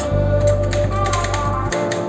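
Background music, with quick metal clicks and taps of steel spatulas chopping chocolate-bar pieces on a frozen rolled-ice-cream plate.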